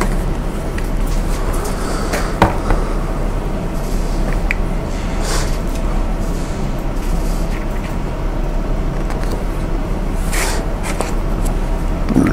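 Steady low electrical hum, with a few soft clicks and rustles of a picture book being handled, about a third and again near the end.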